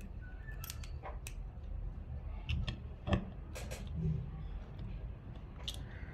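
Small screwdriver turning a screw out of a plastic LED night light, with scattered faint clicks and ticks of the tool and screw.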